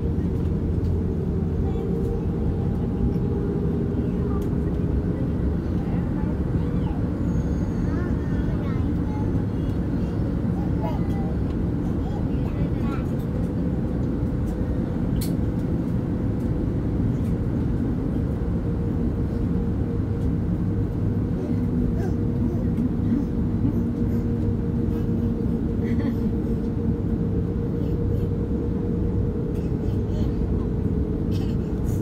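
Steady cabin drone of an Airbus A330neo taxiing, its Rolls-Royce Trent 7000 engines at low power, with a constant hum tone in it and background voices in the cabin.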